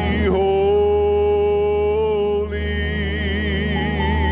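Congregational worship song: male voices hold long sung notes with vibrato over a steady low musical accompaniment, shifting pitch about a third of a second in.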